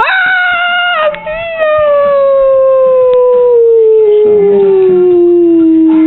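A long, loud howl held on one voice, sliding slowly and steadily down in pitch by about an octave, with a brief dip and fresh start about a second in.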